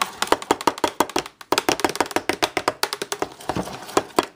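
A metal spoon stirring a smoothie fast in a plastic cup, tapping and clinking against the cup's sides several times a second, with a short break about a second and a half in.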